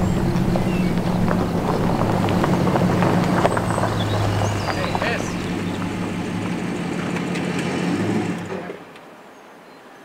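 Truck engine running steadily as the truck drives slowly up the gravel track, with small crunches and clicks from the tyres on the gravel. The sound falls away to quiet about a second and a half before the end.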